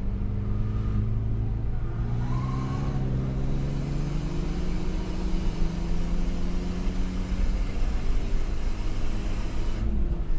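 A car's engine heard from inside the cabin, accelerating hard out of a corner with its pitch rising steadily for several seconds, then dropping near the end as it changes up a gear, over a steady rumble of road noise.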